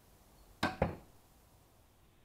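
A 150 lb recurve crossbow firing a broadhead bolt: a sharp crack of the string's release, then a second, slightly louder crack about a fifth of a second later as the bolt strikes the target.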